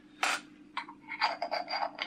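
Metal threads scraping and rasping as a 1¼-inch filter is screwed into a T2 adapter ring by hand: one short scrape near the start, then a run of quick rasping strokes in the second half.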